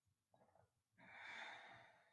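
A person's faint breath out, starting about a second in and trailing off, with a small soft sound just before it.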